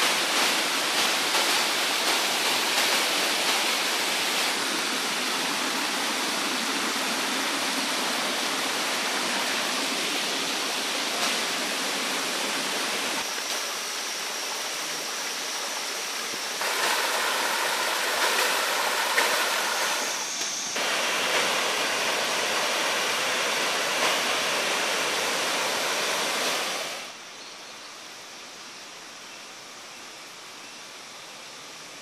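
Water from a tiered limestone waterfall cascading into pools: a steady rushing noise that changes character a few times, then drops sharply to a much quieter hiss near the end.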